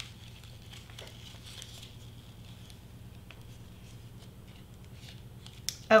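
Quiet paper handling: a printed paper wrapper rustled and fitted around a foil-wrapped chocolate square, with a few faint taps and a sharper click near the end, over a steady low hum.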